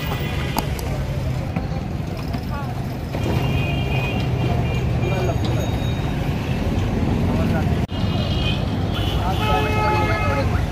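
Busy city street traffic: engines and road noise with people's voices around.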